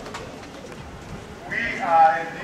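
Low murmur of a gathered crowd, then near the end a loud voice that falls in pitch.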